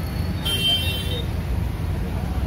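Steady low rumble of street traffic noise, with a brief high-pitched tone sounding for about half a second, starting about half a second in.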